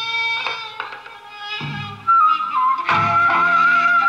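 Korean traditional instrument ensemble (gugak) playing a folk-song melody, with low notes struck and fading and a long, wavering high note held from about two seconds in.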